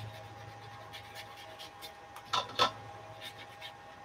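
Watercolor paintbrush dabbing and stroking water onto textured watercolor paper: soft scratchy brush sounds, with two sharper taps a little past halfway.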